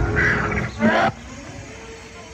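Animatronic velociraptor roaring and growling, cutting off suddenly about a second in.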